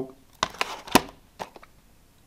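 Plastic Blu-ray cases and a cardboard CD sleeve being handled: a handful of short clicks and knocks, the sharpest about a second in.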